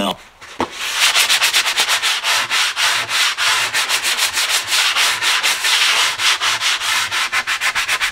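Sanding sponge rubbed quickly back and forth over a dried Durham's water putty patch on a laminate countertop, several even scratchy strokes a second, starting about a second in. The hardened putty is being sanded flush with the countertop surface.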